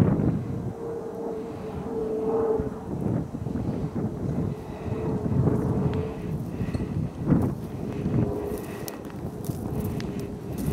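A rabbit-trailing hound baying on the track: faint, drawn-out cries, each about a second long, repeating every few seconds. Wind rumbles on the microphone underneath.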